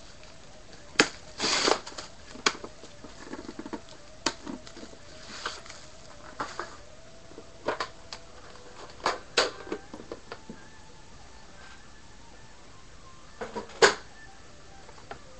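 A sealed trading-card box being unwrapped and opened by hand: crinkling plastic wrap and a scattered series of clicks and taps from the box and its lid, the loudest click just before the end.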